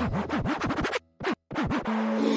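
DJ scratching on a beat, short rising-and-falling record scratches in quick succession, as a transition between tracks in a mix. The music cuts out suddenly about a second in for about half a second, with one short stab in the gap, and the next track comes in near the end.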